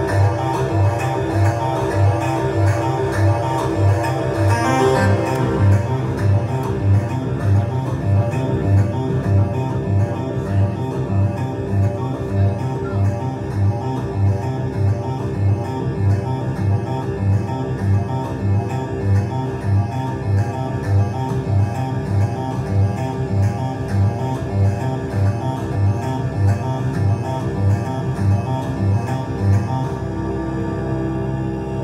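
RMI Harmonic Synthesizer playing a repeating arpeggiator sequence over held notes, with a steady low pulse a little faster than once a second. About four to five seconds in, a brief sweep rises through the upper tones while the harmonic sliders are reset.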